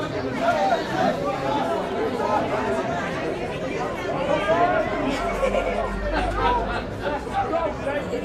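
Many voices chattering at once around a football sideline, overlapping so that no single voice stands out.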